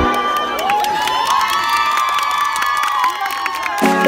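Cheering voices over a break in electronic background music: the bass drops out and high sustained tones and gliding voices fill the gap, then the beat returns near the end.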